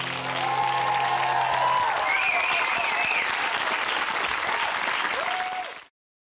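Studio audience applauding at the end of a song, with a few voices calling out over the clapping. The band's last low note rings under it for the first couple of seconds, and the sound cuts off suddenly near the end.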